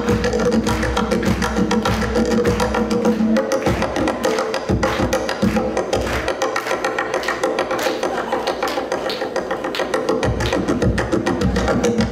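Solo tonbak (Persian goblet drum) played with fast, dense finger strokes and rolls on the skin head. Deep bass strokes sound in the first few seconds, drop away in the middle for lighter, higher strokes, and return about ten seconds in.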